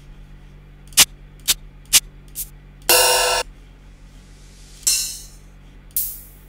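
Hi-hat samples auditioned one hit at a time in a software drum sampler: four short closed-hat ticks about half a second apart, a brief hit with a ringing pitch about three seconds in, then a longer hissing open hat that fades out, with another starting at the end.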